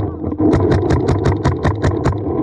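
Paintball marker firing in rapid fire, a brief pause then a run of about eight shots a second, over a steady low hum.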